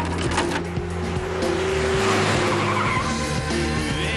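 Car tyres squealing as the car turns and brakes hard, over music.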